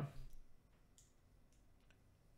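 Near silence in a conversational pause: a voice trails off in the first half second, then only room tone with a few faint clicks.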